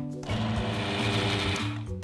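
KitchenAid food processor run on pulse, its blade whizzing chickpeas and roast pumpkin into a purée. The motor starts about a quarter second in and stops just before the end.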